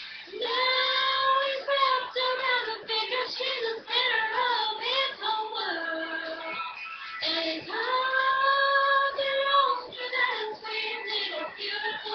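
A girl singing solo, holding long sustained notes with pitch slides, with a short breath gap about midway.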